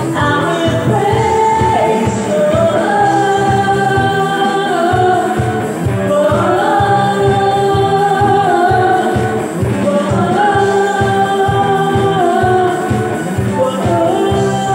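A small live band playing an upbeat worship song: sung vocals in long held phrases over Yamaha keyboard, electric bass and drums with a steady beat.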